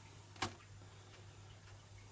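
Faint steady low hum with little else, broken once by a single short spoken word about half a second in.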